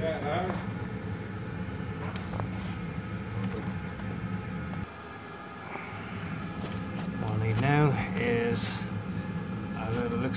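A man speaking briefly and indistinctly near the start and again about three-quarters of the way through, over a steady low hum that drops in level about five seconds in.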